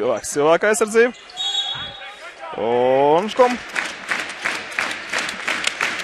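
Basketball bouncing on a hardwood gym court during play, with clicks coming thick and fast in the second half, under a man's voice.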